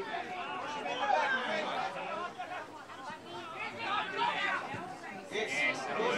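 Overlapping, indistinct voices calling out and chattering around a football ground as play goes on, with no clear words.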